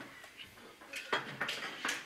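A few light metallic clinks and rattles of metal parts being handled, bunched in the second half.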